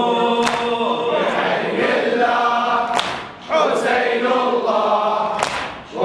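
Latmiya, a Shia mourning chant, sung by men's voices in unison without instruments, in long held phrases with two short breaths. A sharp slap falls about every two and a half seconds, in time with the chant.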